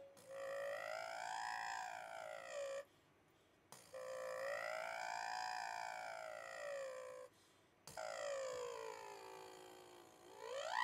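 A mezzo-soprano's voice doing vocal warm-up exercises: three held tones, each about three seconds long, that slide smoothly up and then back down in pitch, with short breaths between them.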